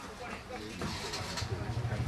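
A motor vehicle's engine running nearby: a low, steady hum with a fast pulse that sets in about halfway through and grows louder.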